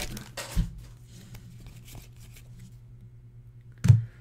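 Foil wrapper of a trading-card pack crinkling and tearing faintly as the pack is opened and the cards are slid out, in a few scattered rustles in the first second or so. A short thump just before the end.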